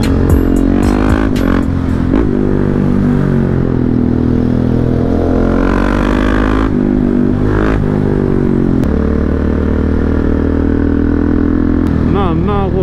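2017 KTM Duke 690's single-cylinder engine through an Akrapovic exhaust, accelerating hard with its pitch climbing and breaking off at each gear change. About three-quarters of the way through it settles into a steady, even run.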